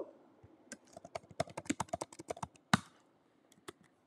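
Typing on a computer keyboard: a quick run of keystrokes lasting about two seconds, then a single click or two near the end.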